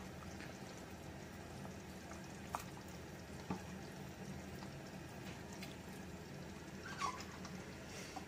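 Faint bubbling of fish curry simmering in a clay pot, with three soft clicks spread through it.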